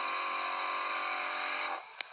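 Motorised knapsack sprayer's pump running with a steady high-pitched buzz while the lance sprays, cutting off abruptly near the end.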